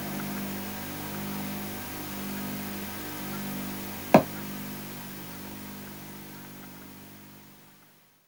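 Steady low electrical hum with hiss, with one sharp click about four seconds in; it fades away gradually over the last few seconds.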